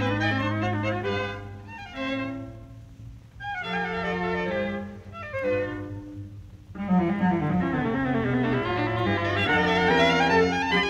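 A string quartet plays a fast classical movement. A full passage over a held low note gives way to a quieter, thinner stretch of falling runs, and the full ensemble comes back louder about seven seconds in.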